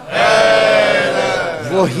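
Many voices of a congregation in a drawn-out collective chanted response that dies away after about a second and a half, when a man's speaking voice comes back in.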